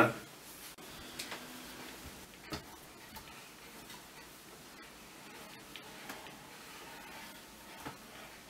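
Faint handling sounds of a TAL-65 reflector telescope being turned by hand on its metal equatorial mount: a few scattered light clicks and soft rubs from the plastic tube. The clearest click comes about two and a half seconds in.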